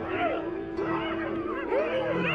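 Spotted hyenas giggling and yelping: many short overlapping calls that rise and fall in pitch, over a steady held musical tone.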